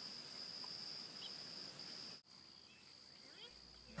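Field insects in summer grass, a faint steady high trill with a faint pulsing note above it; it drops out for an instant just after two seconds and carries on quieter.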